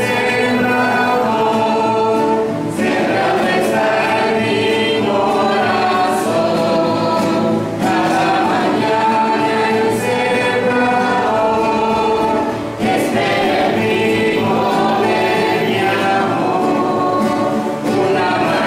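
A small group of women singing a hymn together from song sheets, holding long notes, with short breaths between phrases about every five seconds.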